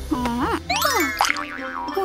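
Cartoon comedy sound effects over background music: springy, boing-like tones that swoop up and down in pitch, with a quick rising run of notes about midway.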